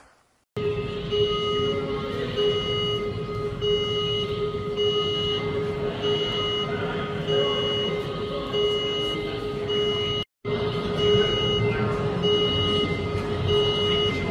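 Regional jet airliner's engines running on the apron: a steady whining drone, with a high electronic beep repeating at an even pace over it. The sound starts about half a second in and cuts out briefly near ten seconds in.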